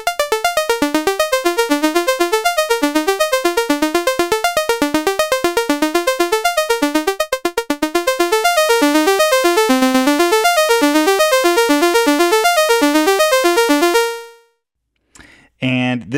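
ST Modular Honey Eater analog oscillator (CEM3340 chip) playing its sawtooth wave through a VCA: a rapid sequence of short plucked synth notes, about eight a second, hopping randomly between quantized pitches. It stops about fourteen seconds in, the last note ringing out briefly.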